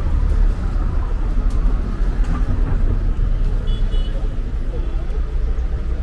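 City street ambience: a steady low traffic rumble with voices of passers-by.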